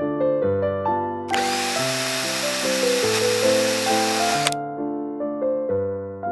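Soft piano music with a small power tool running steadily for about three seconds over it, starting and stopping abruptly just over a second in.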